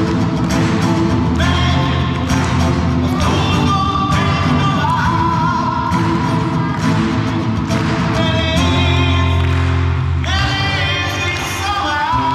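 A singer performing live with a strummed acoustic guitar, the voice holding long notes over a steady strumming rhythm.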